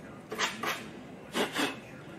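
A round brass wire brush rubbed by hand against the foam of a deer headform, scuffing the surface: two short, scratchy strokes.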